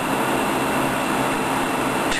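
Steady rushing roar of a glassworking torch flame while a borosilicate glass gather is heated in it.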